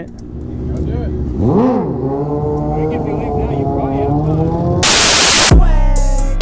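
A motorcycle engine blips once, its pitch rising and falling, then runs steadily for a few seconds. About five seconds in, a loud hiss cuts across it, followed by a low steady hum.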